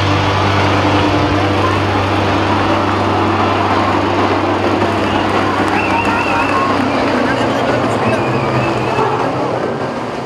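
A pack of racing tractor-trucks running at speed on an oval, a steady loud engine drone with road noise. A wavering high tone rises above it twice in the second half.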